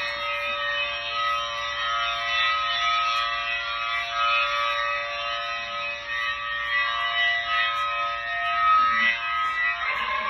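Thunderbolt 1000T civil defense tornado siren sound: a steady chord of several held tones, with parts of the chord swelling and fading in turn, like a rotating siren sweeping past.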